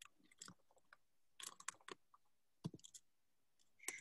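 Near silence broken by a few faint, short clicks, some of them in quick little clusters about one and a half seconds in, near three seconds, and just before the end.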